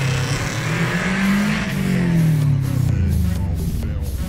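2.0-litre EJ20 flat-four boxer engine of a 1999 Subaru Impreza, non-turbo with an unequal-length exhaust manifold and a straight-pipe exhaust, revving as the car pulls away: the engine note rises, then falls off. Music with a beat comes in under it near the end.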